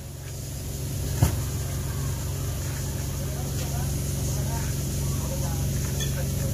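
A steady low hum, with one sharp click about a second in and faint voices in the background.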